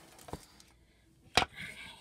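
A small wooden box frame set down on a tabletop: a faint tap, then one sharp knock a little past halfway.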